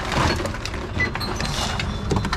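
TOMRA reverse vending machine running as plastic bottles are fed into its intake, a steady mechanical hum with rapid clicking and rattling from its mechanism and the bottles.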